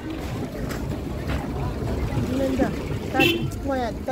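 Outdoor market ambience with a steady low rumble of wind on the microphone, and people's voices talking in the second half.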